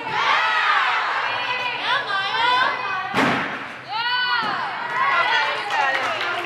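Several young female voices shouting and cheering in high, drawn-out calls in a reverberant gym hall, with one sharp thud about three seconds in.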